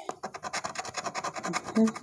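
A coin scratching the coating off a paper scratch-off lottery ticket in a quick, even run of short rasping back-and-forth strokes.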